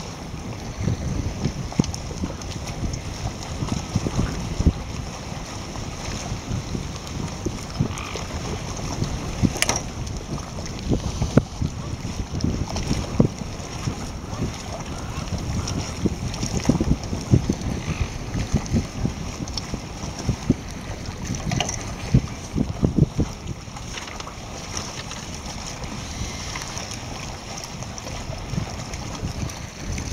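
Wind noise on the microphone, a low, uneven rush that rises and falls in gusts.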